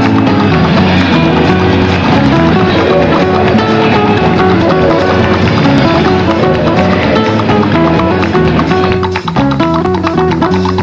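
Band music with guitar and a steady beat.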